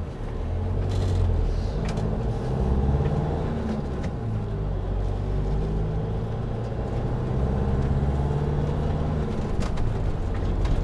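Motorhome engine and road noise heard from inside the cab while driving in slow traffic, the engine note shifting in pitch as it eases off and pulls away.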